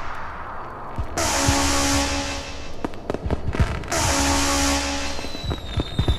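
North East makina dance music from a DJ mix: held synth chords over deep bass that cut out and come back in blocks of a couple of seconds, with a cluster of sharp cracks in the middle.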